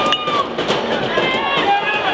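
Several people shouting and calling out over one another as a batted ball is put in play.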